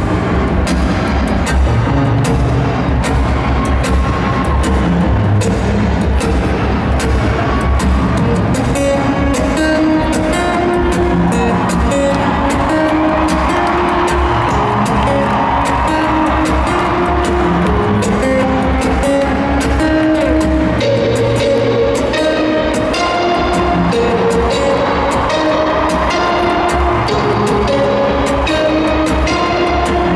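Amplified acoustic guitar built up live on a loop station: a steady beat of percussive hits on the guitar, with picked and strummed guitar parts layered on top, growing fuller from about ten seconds in.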